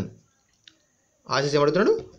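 A man speaking breaks off for about a second. One short faint click sounds in the pause, then his speech resumes.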